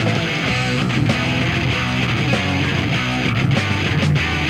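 Punk rock music played by a full band, with strummed electric guitar.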